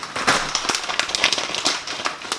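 Foil snack bags crinkling as they are handled: a dense, irregular crackle of crisp plastic packaging.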